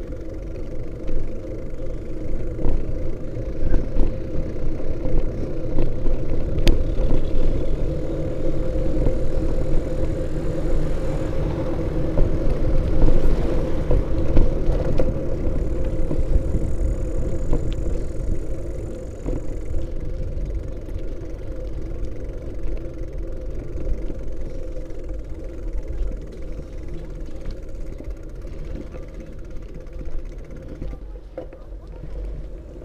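Motor of the vehicle carrying the camera running steadily, heard with heavy low wind and road rumble on the microphone. A few brief knocks or rattles come through, and the noise swells for a few seconds past the middle.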